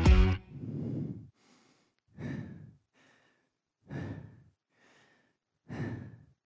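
The song's last beat stops, then a singer breathes heavily into his headset microphone, four slow, breathy breaths about one and a half to two seconds apart, as he catches his breath after a dance routine.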